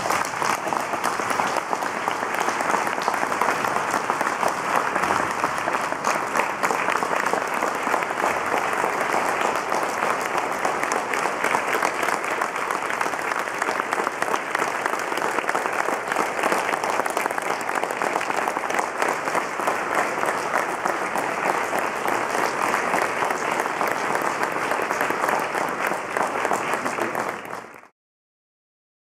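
A large audience applauding, dense and steady, cutting off suddenly near the end.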